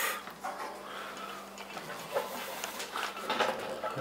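Pop-up roof being lowered by hand onto its steel frame on gas struts: faint rubbing and creaking noises, with a few light knocks in the second half.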